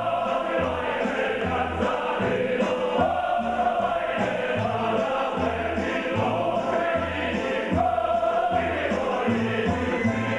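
Ukrainian folk choir singing in full harmony with a band accompanying, sustained vocal lines over a bass that steps between notes on a steady beat.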